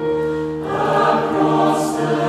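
Mixed choir of men's and women's voices singing sustained chords in harmony, moving to a new chord at the start and swelling in volume after about half a second, with a sung 's' hiss near the end.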